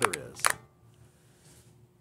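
A man's voice finishing a spoken question, then a pause of near silence with only faint room tone.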